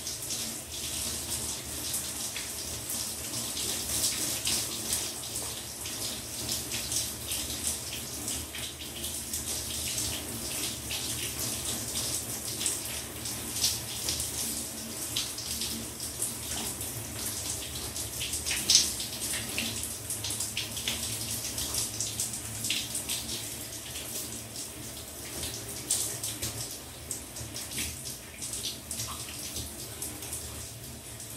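Shower running, water spattering steadily with many small irregular splashes and one sharper splash a little past halfway.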